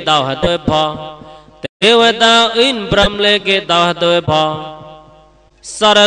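A man's voice chanting a drawn-out, melodic recitation in the manner of Buddhist chanting. It breaks off briefly about two seconds in, trails away late on, and starts again just before the end.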